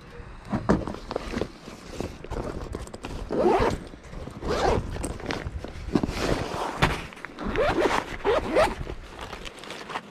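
Zippers on a fabric backpack pulled open several times, with rustling and small bumps as hands dig through its compartments.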